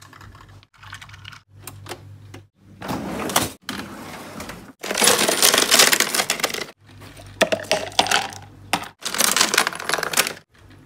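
Ice cubes rattling and clinking as a hand scoops them out of a freezer's ice bin, in several short bursts, the loudest clatter about five to seven seconds in, with a low hum under the quieter stretches.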